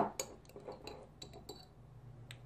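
A few light clinks and taps of glass against kitchenware as a glass spice jar is handled beside a glass mixing bowl, spread out and quiet.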